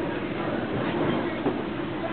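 Street noise: a steady low drone, with faint voices of passers-by mixed in.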